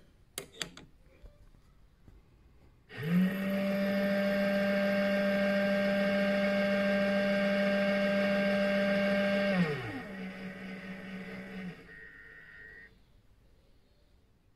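An RCBS ChargeMaster 1500 powder dispenser's motor starts about three seconds in and runs with a steady whine as it spins the tube that throws a 40-grain powder charge into the pan. Near the charge weight it drops in pitch and runs on more quietly, slowing to trickle the last kernels, then stops. A short high beep follows, signalling that the charge is complete.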